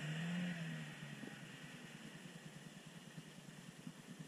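Chevrolet Niva's engine, heard faintly, swelling briefly in the first second as it is revved, then running steadily at low revs while the SUV crawls through a deep puddle.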